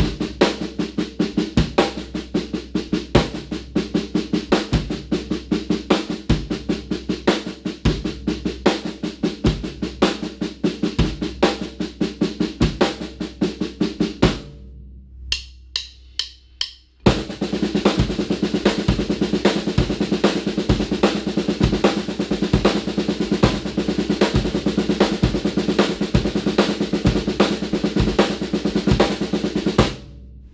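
Snare drum played in a steady stream of sixteenth-note strokes in a seven-note sticking grouping, over a bass drum pulse on the half note. About fourteen seconds in the playing stops for a few seconds, leaving only a few light clicks, then the pattern starts again.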